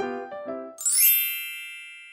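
The last notes of a short music jingle fade out. Then, just before a second in, a bright bell-like chime sound effect strikes once and slowly rings away.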